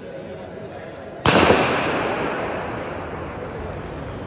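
A single sharp starting-gun shot about a second in, starting a 400 m race, followed by a long echo dying away in the indoor track arena.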